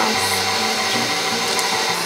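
KitchenAid stand mixer running with a steady motor hum as its paddle beats cheesecake batter in the steel bowl.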